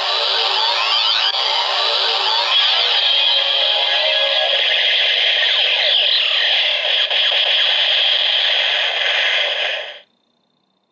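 DX Zero-One Driver toy belt playing its Metal Rising Impact finisher sound effect through its small speaker: a dense, continuous run of electronic whooshes and sweeping tones with no bass, which cuts off abruptly near the end.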